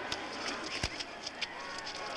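Football stadium ambience on a TV broadcast: a steady crowd noise bed with several sharp knocks as the play is snapped, the loudest a heavy thump a little under a second in.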